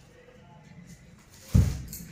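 A single dull thump about one and a half seconds in, after a quiet stretch.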